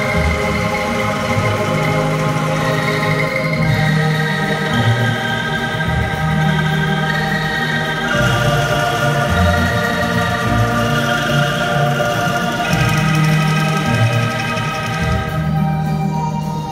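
An ensemble of bamboo angklung being shaken together, playing a slow hymn tune in sustained, shimmering chords that change every second or two over low bass notes.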